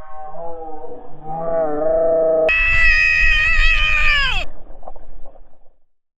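A man yelling as he makes a harnessed jump, held close to a head or body-mounted camera: a long lower yell, then about two and a half seconds in a louder, higher-pitched scream that lasts about two seconds and breaks off, followed by faint rushing noise.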